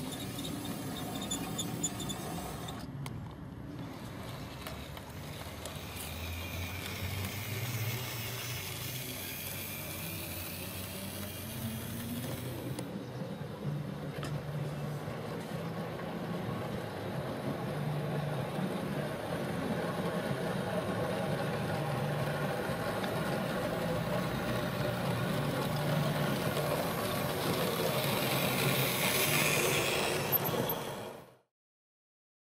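00 gauge model train running along outdoor track, a steady motor hum and wheel rumble that grows louder toward the end.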